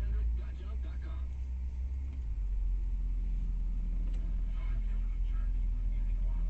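Car moving slowly, with the engine and tyres making a low, steady sound. A faint voice is heard over it near the start and again about two-thirds of the way in.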